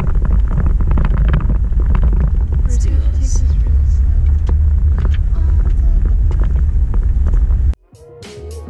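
Car road noise heard from inside the cabin while driving on a gravel road: a loud, steady low rumble of tyres and engine with a scatter of crackles from gravel and rattles. It cuts off suddenly just before the end.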